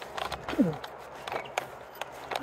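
Footsteps of a person walking outdoors: a few soft, irregular steps, with one short falling voice-like sound just over half a second in.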